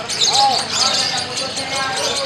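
Lovebird singing a fast, continuous string of high-pitched chirps and trills, with people's voices calling in the background.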